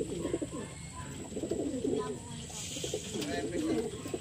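Racing pigeons cooing at the loft, several low, wavering coos overlapping.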